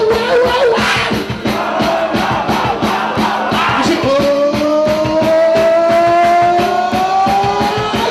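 Live band playing loud amplified rock music with electric guitar and bass over a steady, fast drum beat. About halfway through, a long held note slowly rises in pitch.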